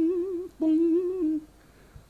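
A man humming two long held 'mmm' notes at a steady pitch with a slight wobble, the second one ending about a second and a half in.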